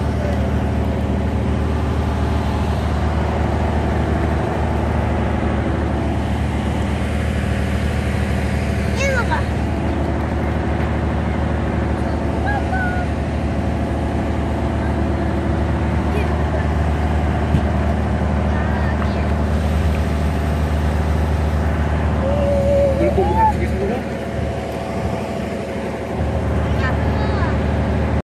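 A boat engine running steadily, a low hum made of several even tones, easing off for a couple of seconds near the end.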